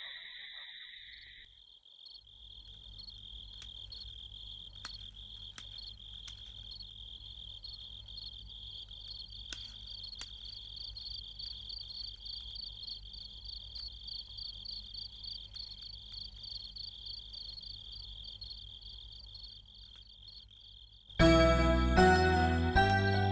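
Crickets trilling steadily in one high, unbroken band, with a fainter pulsing chirp above it and a low hum beneath. About a second before the end, music cuts in loudly with chiming, tinkling notes.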